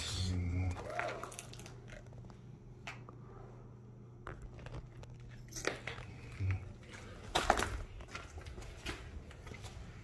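Footsteps crunching and scraping over broken plaster and tile debris on a floor, in irregular cracks, the sharpest about five and a half and seven and a half seconds in.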